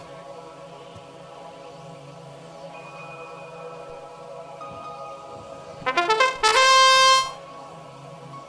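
Steady low background of held tones from the arena, then about six seconds in the match field's electronic horn-like start signal sounds: a brief stutter, then a loud steady blare for about a second, marking the start of the driver-controlled period.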